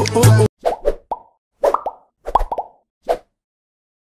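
The song cuts off about half a second in, followed by a string of short cartoon 'plop' sound effects, each a quick gliding blip, in small clusters over about three seconds.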